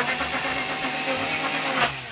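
Two-stroke chainsaw running steadily with its bar held against wooden board siding, used to scrape the facade. The sound fades away near the end.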